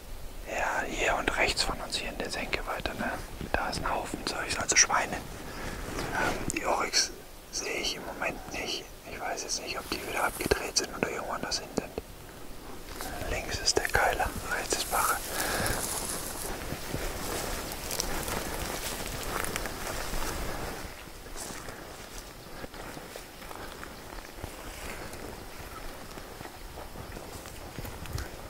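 People whispering to each other in short, broken exchanges for roughly the first half. After that the sound settles into a faint, steady outdoor hiss.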